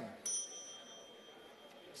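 A small bell struck once, with a high, clear ring that fades over about a second and a half: the presiding officer's bell marking the opening of the session.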